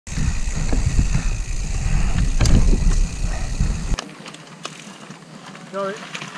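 Mountain bike ridden fast down a dirt forest trail, heard from a helmet-mounted action camera: heavy wind rumble on the microphone and tyres rolling over dirt and gravel, with occasional sharp knocks and rattles from the bike. About four seconds in it cuts abruptly to a much quieter outdoor background, and a man says a short word near the end.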